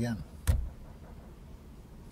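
A single short thump about half a second in, just after the end of a man's spoken word, followed by low steady room background.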